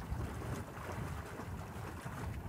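Wind buffeting the microphone in a low, steady rumble over a faint wash of water from a horse wading belly-deep in a creek.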